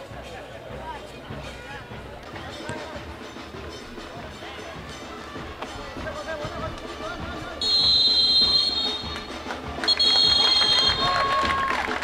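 Music and voices over the match sound. About two-thirds of the way through come two long, loud, high-pitched blasts of a referee's whistle, the first about a second and a half long and the second about a second.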